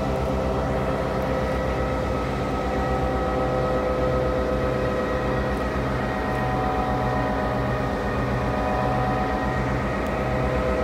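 Victorian Railways S class diesel-electric locomotive S307's EMD V16 engine idling, a steady running note with a low throb that beats about twice a second.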